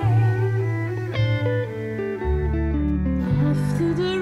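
Small mixed ensemble of flutes, electric guitar, accordion, double bass and cello playing an instrumental passage of a slow song: a melody stepping downward over sustained low bass notes, with a plucked chord about a second in.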